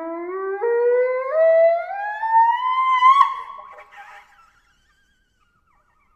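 Shell horn blown in one long note that climbs in pitch, sliding upward in small steps for about three seconds. Near the top the tone cracks, breaks up and trails off, dying away by about four and a half seconds.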